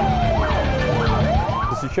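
Fire engine siren wailing: a slow glide down in pitch that turns and climbs again in the second half, with shorter quick rising-and-falling whoops alongside it, over a low rumble.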